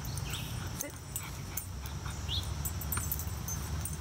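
A young German Shepherd puppy whimpering: a few short, high, rising whines.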